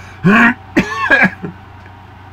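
A man clearing his throat in two rough bursts, a short one about a quarter second in and a longer one just before a second in.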